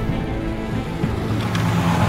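Several snowmobile engines running as the sleds drive closer, mixed with background music.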